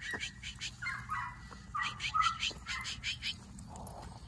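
Young border collie sheepdog whining, high and wavering, about a second in and again around two seconds in, over a quick run of crisp crunching footsteps on frozen ground.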